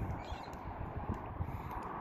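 Wind rumbling and buffeting on a phone microphone on a breezy rooftop, a steady low noise with a few faint ticks.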